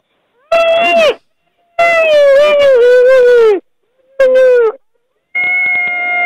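Long howling calls in four drawn-out stretches, separated by silences. Each holds a wavering pitch that sags toward its end, and the last runs on past the end.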